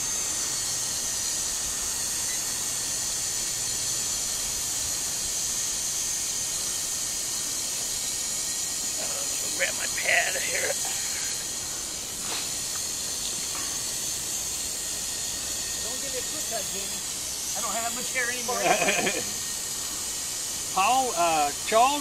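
Small quadcopter drone flying, its propellers giving a steady high-pitched whine that wavers briefly as the motors change speed, with a few faint voices.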